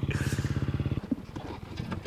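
Dirt bike engine idling with an even rapid pulse, then cut off suddenly about a second in. A few light clicks and knocks follow.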